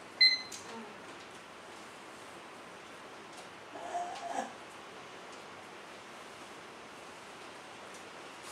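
A short high-pitched squeak just after the start, then a brief whimper-like voice sound about four seconds in, over a steady hiss.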